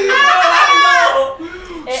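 A man's high-pitched, drawn-out vocal cry lasting about a second and falling in pitch, crowing-like, amid laughter. It drops away to quieter sounds halfway through.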